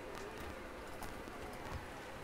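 Faint outdoor background with a few light, scattered taps and clicks, about four in two seconds.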